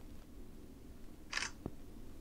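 Samsung Galaxy A40 camera shutter sound: one short snap about one and a half seconds in as a photo is taken, followed by a faint click.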